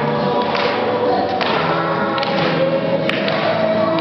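A group of young girls singing a song together in unison, with held notes. A single sharp knock sounds about three seconds in.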